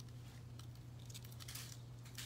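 Faint scratchy rubbing and crinkling of nail transfer foil as it is rubbed down onto a gel-coated nail tip with a hand tool, over a steady low hum.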